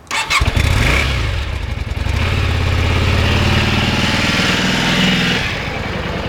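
Yamaha Drag Star motorcycle's air-cooled V-twin started up: a brief crank, the engine catches within half a second with a quick rise in revs, then runs on steadily at idle through the twin chrome exhausts.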